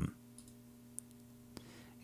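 Two faint computer mouse clicks, about one and a half seconds in and half a second apart, over a low steady hum.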